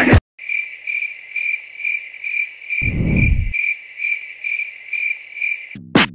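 Cricket chirping in a steady, even rhythm, a little over two chirps a second, with a short low rumble about three seconds in.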